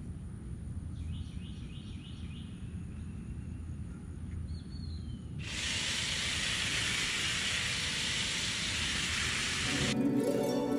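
Outdoor ambience with a few short bird chirps, then a steady hiss starts suddenly about halfway through and holds.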